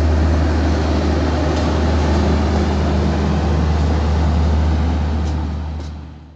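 Rear of a passenger train rolling past, its last coach a luggage, brake and generator car with its diesel generator set running: a steady low hum over wheel-and-rail noise, fading out near the end.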